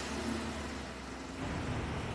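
Car engine running steadily, heard as a low hum with a soft even rush of noise.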